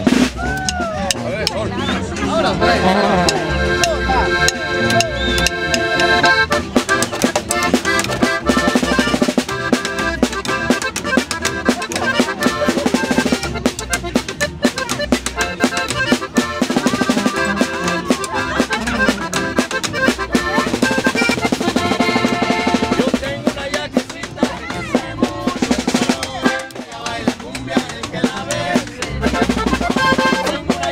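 A norteño band playing live, the accordion carrying the melody over drums.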